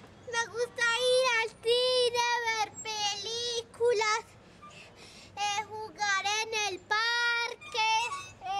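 A young boy singing in a high voice, in short phrases of held, slightly bending notes, with a pause of about a second some four seconds in.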